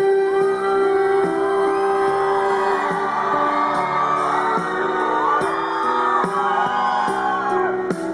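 Female pop singer singing live into a microphone over a backing track, holding a long note early on. Fans whoop and cheer as the accompaniment plays on.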